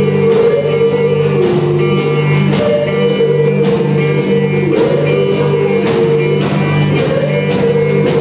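Live band playing amplified music: electric guitars holding and bending notes over a steady drum kit beat.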